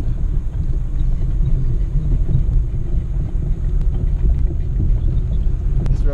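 Cabin sound of a Jeep ZJ crawling over a rocky gravel shelf road: a steady low rumble of engine and tyres on loose rock, with one sharp click near the end.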